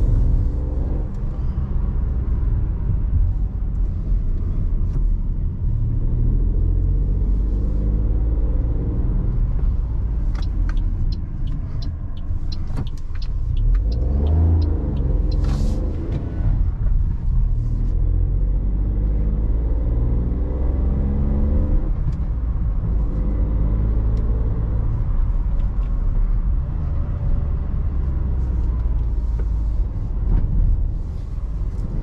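Cabin sound of a 2021 Toyota Aygo's 1.0-litre three-cylinder VVT-i engine under way, with engine pitch climbing and dropping repeatedly as it accelerates and shifts, over steady low road rumble. A short run of light ticks comes around a third of the way in.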